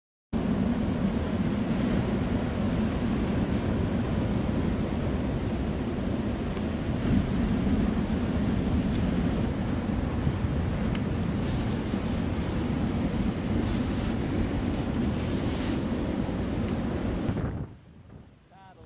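Wind buffeting the microphone over the steady rush of ocean surf breaking on a sandy beach. The sound cuts off suddenly near the end.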